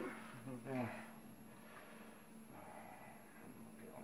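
A man's voice briefly in the first second, then quiet room tone with a faint steady hum.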